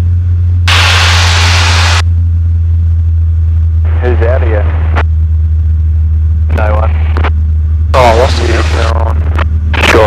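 The Robin 2160's engine drones steadily and low in the cockpit. About a second in, a burst of radio static hiss lasts just over a second. Brief snatches of voices follow in the second half.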